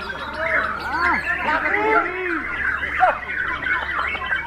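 Several Bornean shamas (murai batu borneo) singing at once in their contest cages: a dense, unbroken tangle of rich whistled phrases, with notes arching up and down over one another.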